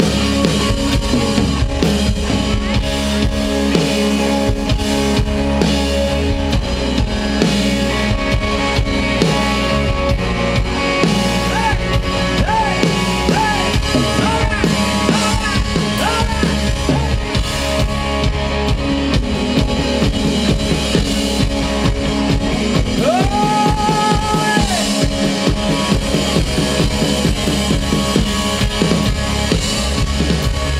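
Live rock band playing an instrumental passage of the song: electric guitar, bass guitar and drum kit together, with short sliding lead notes in the middle and one long held note about two-thirds of the way through.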